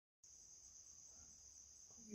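Insects trilling steadily in one faint, high-pitched continuous tone, starting suddenly a moment in after silence.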